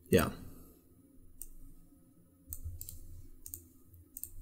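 Computer mouse clicks, sharp and light: one a little over a second in, then two quick pairs in the second half.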